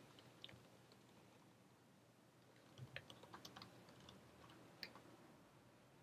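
Faint computer keyboard typing: a quick run of keystrokes about three seconds in as a terminal command is typed, then a single keystroke near the end, the Enter that runs it.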